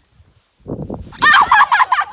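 A person's voice making a loud, fast-warbling, turkey-like gobbling call, starting a little past a second in.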